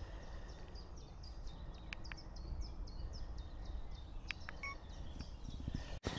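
A woodland bird singing a rapid series of short, high notes, each falling in pitch, about four a second, over a low steady background rumble, with a couple of faint clicks.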